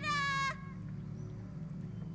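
A single high, clear held note or call with many overtones, from the film playing, dipping slightly in pitch as it ends. It cuts off abruptly about half a second in, leaving a low steady hum.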